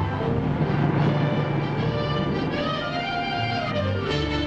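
Orchestral film music, with bowed strings carrying a melody over held lower notes.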